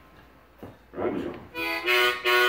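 Harmonica blown in short, loud held chords, starting about a second and a half in after a quiet moment.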